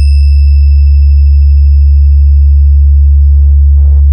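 A loud, steady, very deep electronic bass tone held unbroken, the 'vibration' bass of a DJ sound-check track, with a thin high whistling tone above it. Near the end, short hissy percussion hits come in.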